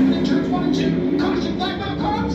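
Indistinct voices and background music over a steady low hum.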